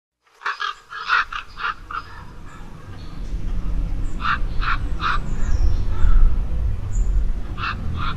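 Short animal calls: a quick cluster in the first two seconds, three more in the middle and one near the end, over a low rumble that builds up.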